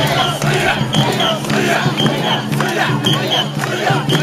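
Mikoshi bearers chanting together in a rhythmic group call as they carry the portable shrine, with a short high double note repeating about once a second over the crowd.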